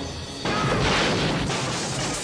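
Trailer music with a sudden loud crash about half a second in: a wide rush of noise that holds for over a second and begins to fade near the end.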